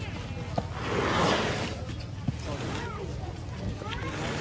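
Boxes of fish in foam and cardboard cartons being set down and shifted on concrete, with a noisy swell of handling sound lasting about a second and a couple of sharp knocks, over a low steady hum and background voices.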